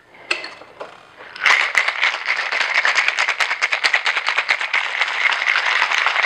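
Ice rattling inside a metal cocktail shaker, shaken hard and fast. It begins with a single click as the shaker is closed, then from about a second and a half in a steady, rapid rattle.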